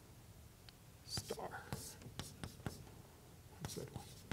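Chalk writing on a blackboard: short taps and scratchy strokes, starting about a second in.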